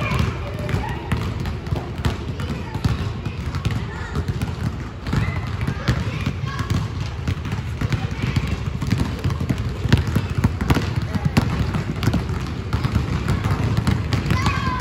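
Many basketballs being dribbled at once on a hardwood gym floor, a dense, irregular patter of bounces that never settles into one rhythm, with children's voices calling out over it.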